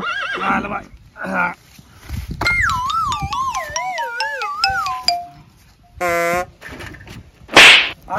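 Horse whinny sound effect: a wavering call that falls in pitch over about three seconds. It is followed by a short buzzing tone and then a loud whoosh near the end.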